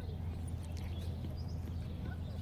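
Steady low outdoor rumble, with a few light clicks of a pony's bridle buckle being fastened a little under a second in and faint bird chirps.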